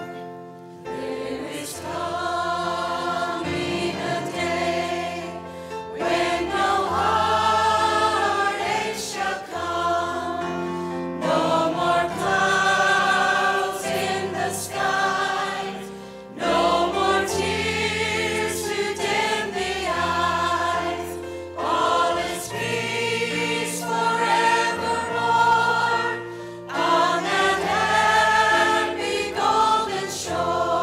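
Church choir of men and women singing, backed by a steady instrumental accompaniment, in phrases of about five seconds with short breaks between them.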